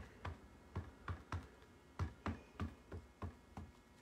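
Ink pad dabbed repeatedly against a rubber stamp to load it with ink, a faint soft tap about three times a second.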